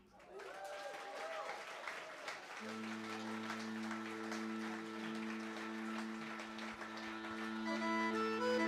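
Audience applauding, with a few shouts, right after a piece ends. About two and a half seconds in, an accordion starts a long held low chord under the applause, and a melody begins on it near the end.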